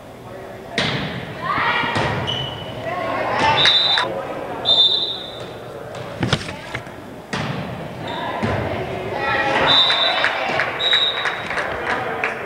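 Volleyball being played in a school gymnasium: the ball is struck several times with sharp slaps and thuds, among shouts and cheers from players and spectators. A few short, high, steady tones come in two pairs about a second apart, around the middle and near the end.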